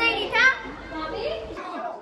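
Children's voices: a child talking excitedly, loudest in the first half-second, then fainter.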